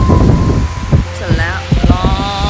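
Wind buffeting the phone's microphone, a steady low rumble, under a woman's voice.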